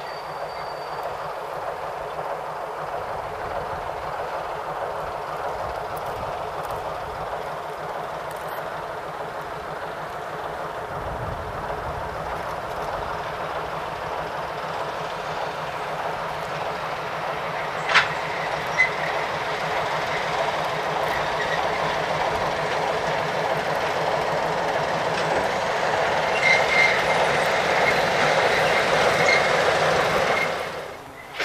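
A ČSD class T 435 'Hektor' diesel locomotive hauling a short goods train, its diesel engine running under load and its wheels rolling on the track. The sound grows steadily louder as it approaches, with a single sharp clank about two-thirds of the way through and a few lighter clicks near the end.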